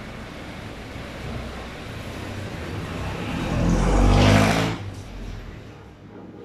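A motor vehicle's engine passing close by, growing louder over about two seconds to a peak a little past the middle and then dropping away quickly, over steady background noise.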